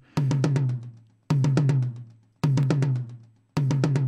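Recorded tom drum played back, four strokes a little over a second apart, each ringing with a low tone that dies away. It is being auditioned while a gentle EQ cut of about 2.4 dB near 150 Hz is applied to tame its boomy, boxy resonance.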